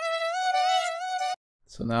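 A single computer-generated vocal harmony note at F5, about 700 Hz, played back on its own: one thin, buzzy sustained tone of about a second and a half that creeps slightly up in pitch and cuts off suddenly.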